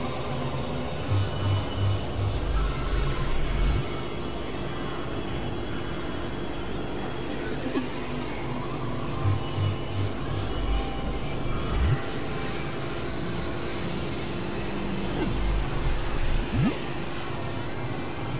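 Experimental synthesizer music: a dense, noisy drone with steady held tones, clusters of low pulses that come and go a few times, and wavering high tones above.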